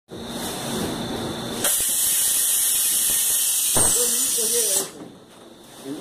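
Hot-and-cold heel counter moulding machine letting out compressed air: a loud, steady hiss that starts suddenly about two seconds in and cuts off sharply about three seconds later.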